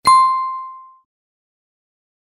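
A single bright ding sound effect, a clear bell-like tone with ringing overtones, struck once and fading away within about a second, as the on-screen subscribe button appears.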